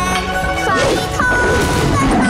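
Animated series' opening theme music with held melodic notes, cut through by a few cartoon crash and whack sound effects.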